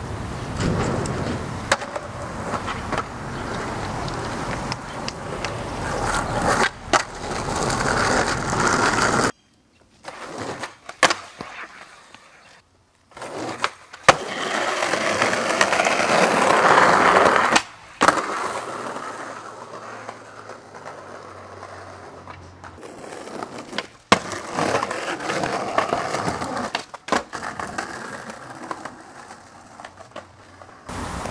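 Skateboard wheels rolling over rough concrete, swelling and fading, with several sharp clacks of the board hitting the ground. The sound breaks off abruptly a few times where the clips change.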